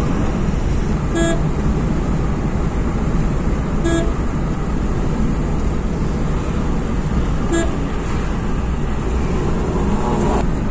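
Steady road and engine noise inside a moving car's cabin, broken three times by a short single-tone car horn beep, a few seconds apart.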